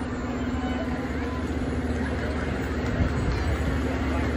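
Steady low engine drone of slow-moving parade vehicles, a side-by-side utility vehicle and fire engines creeping along, with a constant hum and a murmur of crowd chatter under it.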